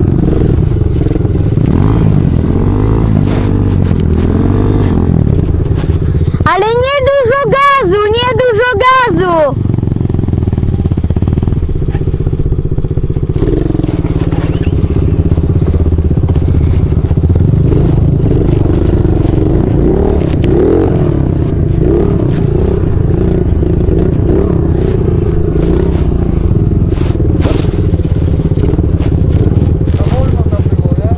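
Dirt bike engine running steadily under the rider while riding over a dirt track, with wind noise on the microphone. From about six and a half to nine and a half seconds in, a loud wavering pitched sound rises over it.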